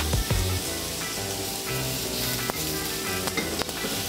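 Peppers, onions and meat strips sizzling on a hot flat-top griddle, with a few sharp clicks of metal tongs turning them over.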